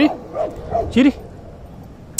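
A dog barking and yipping in short bursts during rough play with other dogs, about four calls in the first second and a bit, then quieter.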